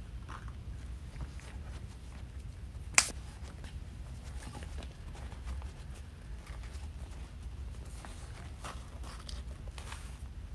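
Rustling and crinkling of craft ribbon being looped, pinched and pulled off its spool on a bow maker, over a low steady hum. A single sharp click stands out about three seconds in.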